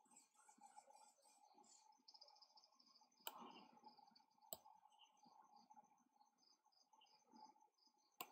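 Near silence: faint room tone with soft computer mouse clicking, two sharper clicks a little over three and four and a half seconds in.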